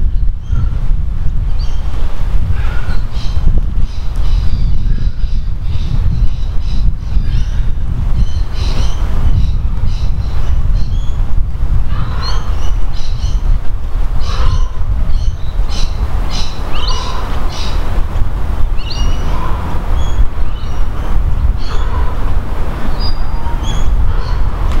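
Wind rumbling on the microphone, with birds chirping in short, repeated calls over it.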